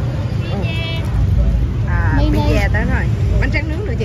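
Nearby voices talking in short bursts over a steady low rumble of crowd and event noise.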